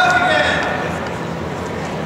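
A voice calls out briefly at the start, then steady gymnasium room noise.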